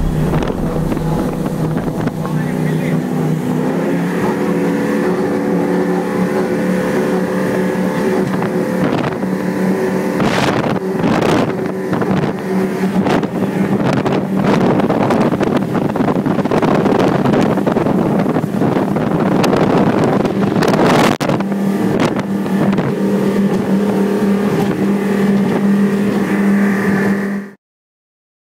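Motorboat engine running at speed, a steady engine note over the rush of water and wind buffeting the microphone; it cuts off suddenly near the end.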